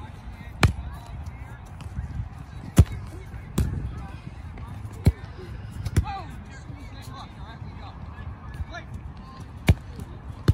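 Soccer ball on a solo trainer's elastic tether being kicked again and again on artificial turf: six sharp thuds, irregularly spaced one to three seconds apart, as it is struck and springs back.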